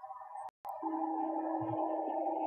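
Live rock-concert sound between speech and song: a brief dead cut-out in the recording about half a second in, then a steady held tone over a low haze.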